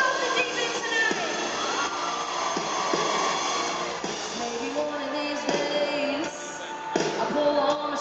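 A live band playing a country-pop song with a woman singing, heard from the audience seats of an arena with the hall's echo.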